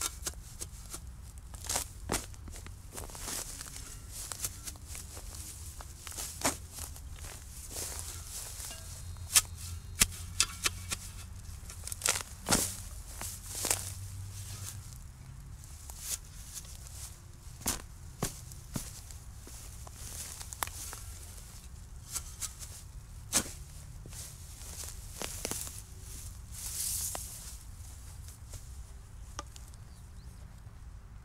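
A spade working into soil and turf to dig a planting hole: irregular sharp knocks and scrapes of the blade, spaced unevenly.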